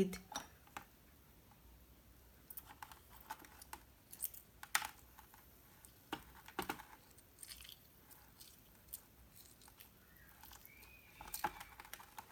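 Faint, irregular clicks and small squelches of a lime being squeezed by hand over a small metal tea strainer resting on a cup.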